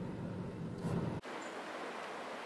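Car cabin noise while driving: a steady low rumble of engine and road. It cuts off abruptly about a second in, giving way to a steady outdoor hiss.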